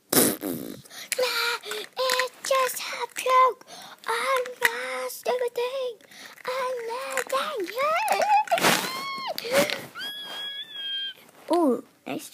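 A child's voice making wordless vocal noises: a string of short notes held near one pitch for several seconds, then gliding, higher squeaky cries toward the end.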